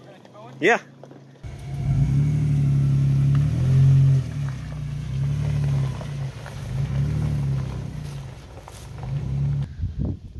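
Nissan Xterra's engine comes in suddenly about a second and a half in and revs, loudest around four seconds, then keeps running with its revs rising and falling.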